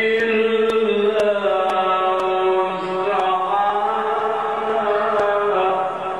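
A man chanting Quran recitation in a slow, melodic style, drawing out long, ornamented notes that rise and fall in pitch. The phrase tails off at the end.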